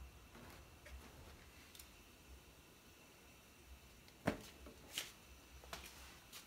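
Faint room tone, then three light knocks in the last two seconds, the first the loudest: a plastic-lidded jar of sugar being handled and set down on a kitchen countertop.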